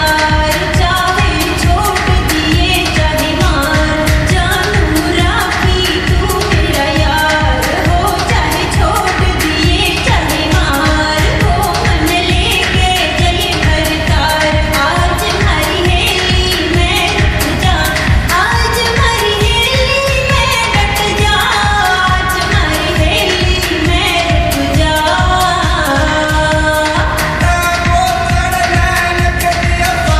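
Haryanvi pop song: singing over a steady, dense beat.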